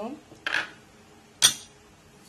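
Kitchen handling sounds: a brief rustle about half a second in, then one sharp, ringing clink of a glass bowl against a stainless steel mixer-grinder jar.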